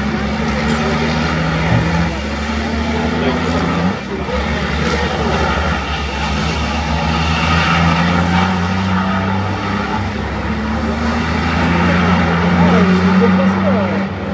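Racing trucks' diesel engines running hard at high revs, a steady drone whose pitch steps up about four seconds in and rises again near the end.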